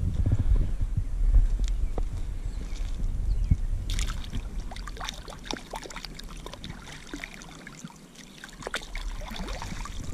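Shallow, muddy pond water sloshing around a hand as a caught bass is held in it and let go. Small splashes and drips come through the middle seconds.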